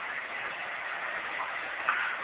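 Steady background hiss of a speech recording during a pause in a man's sermon, with no voice; a short faint sound comes just before the end.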